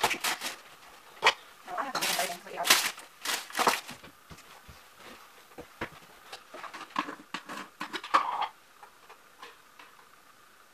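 Kitchen handling sounds: a plastic bag crinkling in quick bursts, with clicks and knocks of things being set down and a plastic jar being handled. The bursts are loudest in the first few seconds, thinning to scattered clicks and dying away late on.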